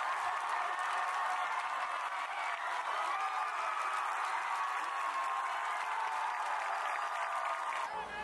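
Football stadium crowd cheering and clapping, steady throughout, with indistinct voices mixed in.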